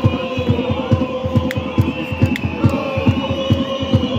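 Football supporters in the stands chanting together over a bass drum beaten steadily, about four beats a second.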